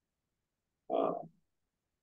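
A man's single short hesitation "uh" about a second in; otherwise silence.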